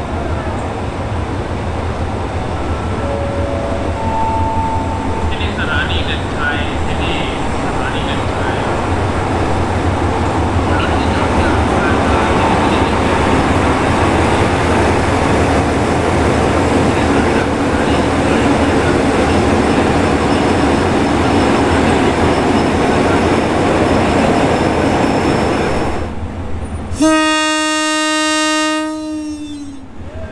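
Hitachi HID diesel-electric locomotive and its coaches rolling slowly alongside a platform: a steady rumble of engine and wheels on rail. Near the end the sound cuts, and a train horn gives one long blast of about two and a half seconds.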